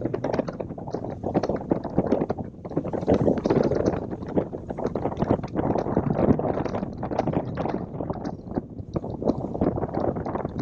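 Falcon F215 bass boat running at speed over choppy water. Wind buffets the microphone and water rushes and slaps against the hull in a constant jumble of short knocks.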